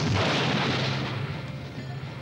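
A cartoon sound effect over background music: a sudden boom with a rushing noise that fades over about a second and a half. It stands for the left ventricle contracting and driving the blood out.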